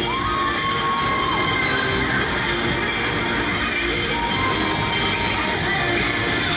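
Cheerleading routine music playing over a PA in a gym, with a crowd cheering and children shouting along.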